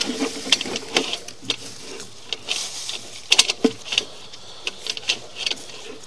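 Sewer inspection camera pushed through a drain trap: irregular clicks and knocks of the camera head and push cable against the pipe, the loudest cluster about three and a half seconds in. A steady low hum runs underneath.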